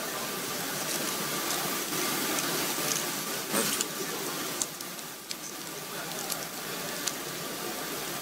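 Ambience of a large hall full of waiting people: an even background hiss with indistinct murmur, a faint steady whine, and a few scattered clicks.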